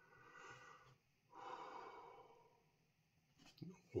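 A man breathing out hard through his mouth twice, faintly, as the heat of a superhot chilli sauce hits him. The second breath is longer than the first.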